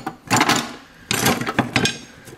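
Metal hand tools (screwdrivers, picks, wrenches) clattering and scraping against each other in a tool box drawer as a hand rummages through them, in two bursts.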